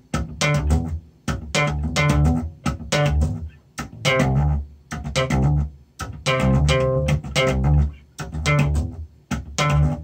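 Solo electric bass guitar played slap-style in a pop-slap-hammer pattern: sharp popped and thumb-slapped notes with hammer-ons, in quick rhythmic phrases separated by short breaks.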